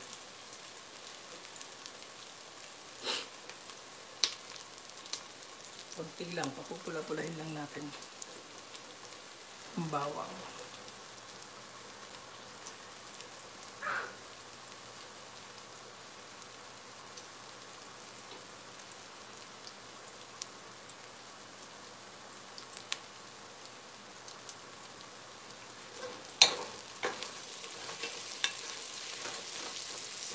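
Chopped onion and garlic sizzling steadily in hot oil in a nonstick pot as they sauté, stirred with a wooden spatula. There are a few sharp knocks of the spatula against the pot, the loudest near the end.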